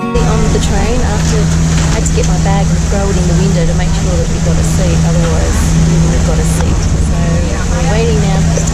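Steady low engine hum of a train standing at a station platform, heard from inside the carriage, with indistinct chatter of many voices around it.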